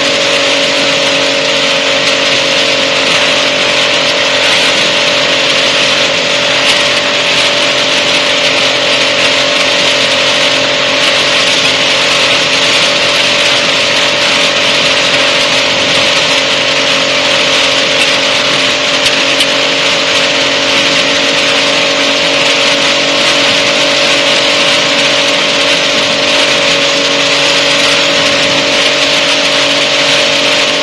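Challenger ultralight's liquid-cooled engine and pusher propeller running steadily at taxi power, holding an even pitch with no change in speed.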